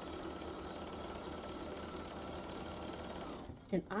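Electric sewing machine running steadily as it stitches a seam through fabric and foundation paper, then stopping about three and a half seconds in.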